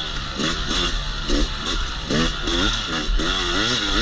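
Yamaha YZ250X 250 cc single-cylinder two-stroke engine revving up and down again and again as the dirt bike is ridden, its pitch rising and falling with each twist of the throttle.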